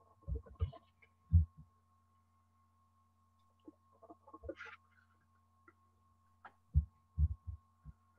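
Quiet room over a computer microphone: a steady low electrical hum with a few short, soft thumps, three in the first second and a half and four more near the end.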